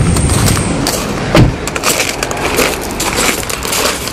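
A car's rear door shut with one loud thump about a second and a half in, followed by footsteps crunching irregularly on gravel.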